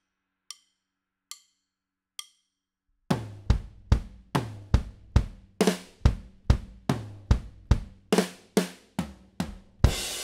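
Drumsticks clicked together three times as a slow count-in. About three seconds in, a drum kit starts a slow punk/hardcore fill of kick, snare and tom hits, two to three a second, and it ends on one loud hit with a cymbal ringing on.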